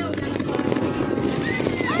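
Many firecrackers and fireworks popping in rapid, overlapping succession across the neighbourhood, with music and voices underneath. A short exclamation comes near the end.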